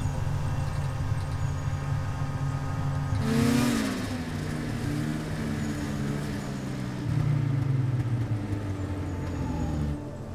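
Snowmobile engine running steadily, revving up with a rush of noise about three and a half seconds in, then settling back to a steady run.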